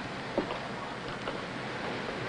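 Steady low hiss of an old film soundtrack, with nothing else standing out.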